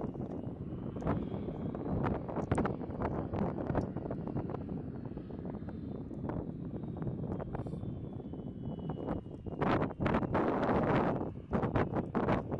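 Wind buffeting the microphone, over a faint, thin, high whine from the RQ-4B Global Hawk's turbofan engine as the drone rolls along the runway. A louder gust of wind hits about ten seconds in.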